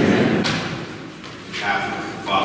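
A muffled thump, then a sharp knock about half a second in.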